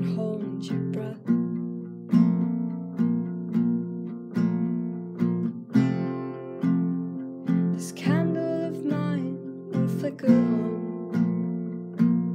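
Guitar playing an instrumental passage between sung lines, with chords struck about every three quarters of a second and left to ring between strokes.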